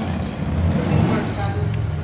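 A low, steady rumble with faint voices over it.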